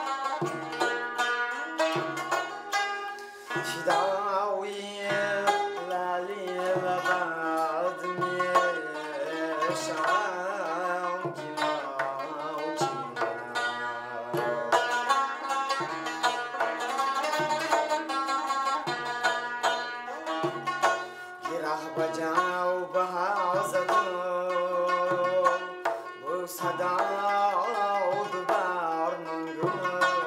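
Tajik folk song: a male voice singing with a plucked long-necked lute and a doira frame drum keeping a steady beat.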